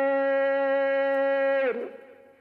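A man's voice holding one long sung note of a shilla, a chanted Gulf Bedouin poem. The note is held level, then slides down and breaks off about 1.7 s in, leaving a fading echo.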